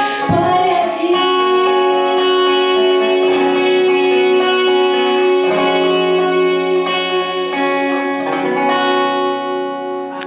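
A woman singing a worship song in Spanish over an acoustic guitar, holding one long note from about a second in that wavers near the end while the guitar keeps playing under it.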